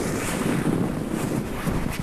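A woman crying close to the microphone: uneven, breathy sobbing without words.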